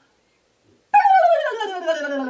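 About a second of near silence, then a woman's voice sliding down in pitch in one long wordless glide: a vocal sound effect for the mouse running down the clock in the nursery rhyme.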